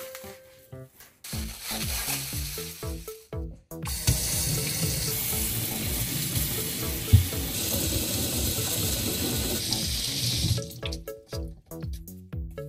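Tap water running into a stainless-steel kitchen sink as a radish is rinsed under it, a steady rush that stops near the end, with a single knock midway. Light background music plays underneath.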